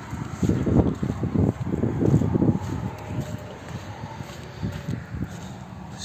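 Handling noise and footsteps: irregular low thumps and rustling of a hand-held camera as someone climbs out of a car onto dirt ground and walks to the front of it, busiest in the first half and quieter toward the end.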